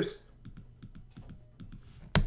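A quick run of about a dozen faint, light clicks from computer keys being tapped.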